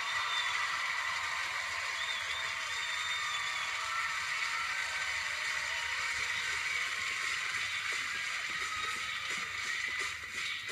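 Studio audience applauding and cheering, a steady dense wash of clapping with a few faint whoops.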